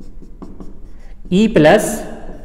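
Felt-tip marker writing on a whiteboard: a run of short scratching strokes, then a man's voice speaks one word near the end.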